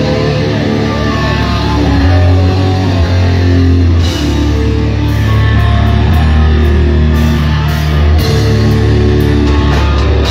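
A live heavy metal band playing loud: electric guitar and bass guitar riff together over a drum kit. The cymbal and drum hits grow much more prominent about four seconds in.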